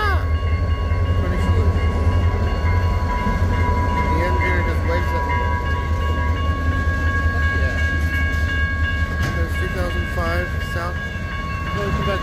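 Diesel freight locomotive rumbling past at close range, then loaded lumber flatcars rolling through the grade crossing. Steady high-pitched ringing tones sound over the low rumble.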